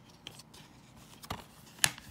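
Plastic DVD case being handled and snapped shut: two sharp clicks about half a second apart, the second one louder.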